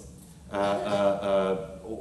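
A man's voice: after a brief pause, one drawn-out hesitation vowel ('ehh') held at a steady pitch for about a second.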